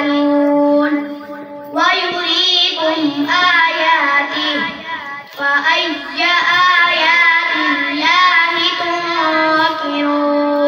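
A boy reciting the Quran in a chanted, melodic style into a microphone. He holds long steady notes and winds ornamented turns between phrases, with a short breath pause about a second and a half in.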